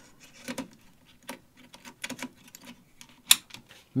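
Light clicks and taps of hands fitting an aluminium M.2 SSD heatsink cover onto a motherboard, with one sharper click a little past three seconds in.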